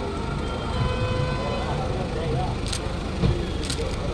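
Steady low rumble of idling car engines under faint background voices, with a single thud about three seconds in as a car door is shut.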